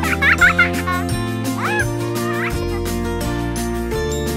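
Background music with sustained notes and a steady beat. High warbling chirps sound over it in the first half.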